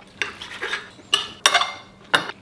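Steel knife and fork scraping and clinking on a ceramic plate while cutting a grilled steak: several short, sharp strokes, some with a brief metallic ring.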